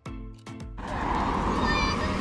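Background music with plucked notes, giving way about a second in to a rising rush of traffic noise from the road, with a brief high squeal near the end.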